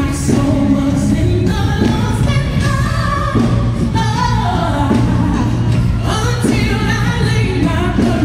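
Live gospel band and singers: a female lead vocal with backing singers over electric bass, drums and keyboard, amplified through stage speakers.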